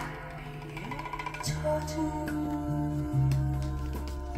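Music playing from a vinyl LP of Korean folk songs on a turntable, with held low bass notes under sustained melody notes.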